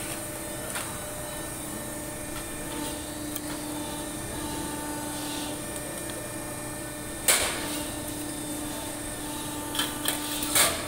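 Press brake running with a steady hum, then a single sharp clank about seven seconds in as the ram comes down and bends the sheet-metal strip. A few lighter knocks follow near the end as the bent piece is handled.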